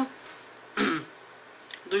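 A woman clears her throat once, briefly, about a second in, during a pause in her talking; she starts speaking again near the end.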